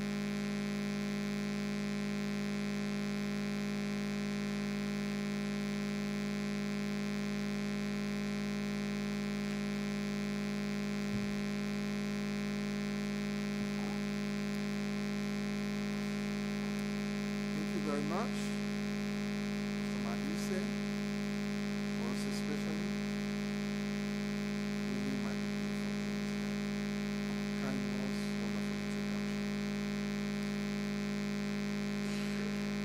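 A steady electrical hum made of several fixed tones, the loudest of them low-pitched, with no change in level. Faint, brief voice sounds come in a few times in the second half.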